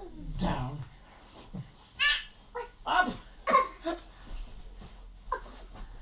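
A toddler babbling and squealing in short, high-pitched bursts, with a lower adult voice sound in the first second.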